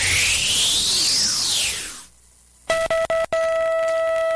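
Produced radio-jingle sound effect: a swooping electronic sweep that rises in pitch, turns down and fades out about two seconds in. After a short pause, a steady electronic time-signal beep sounds, broken briefly twice, introducing a time check.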